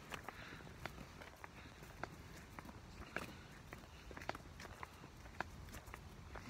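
Footsteps on a dirt path, faint and even, about two steps a second.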